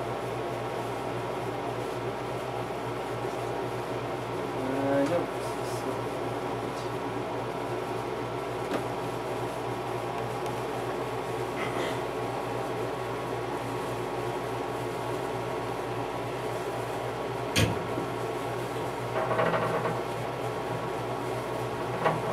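A steady mechanical hum of room machinery runs throughout. A single sharp knock comes about two-thirds of the way through, with a few faint brief sounds around it.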